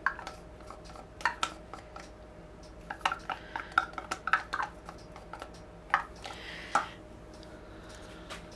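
Plastic paint cups and a wooden stir stick handled on a tabletop: scattered light taps and clicks, with a quick run of them around the middle, as leftover paint is combined into one cup.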